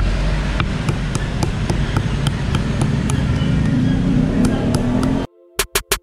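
Stone pestle grinding and crushing white peppercorns and garlic on a flat stone grinding slab (ulekan and cobek): a steady rough scraping with sharp cracks about three times a second. It cuts off suddenly about five seconds in.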